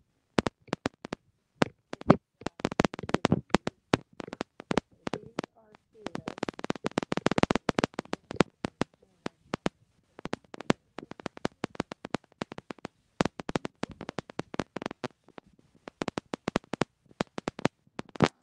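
Choppy, broken-up stream audio: a rapid, irregular run of sharp clicks and brief fragments of sound, with dead silence between them. It is typical of speech chopped to pieces by dropouts in a failing connection.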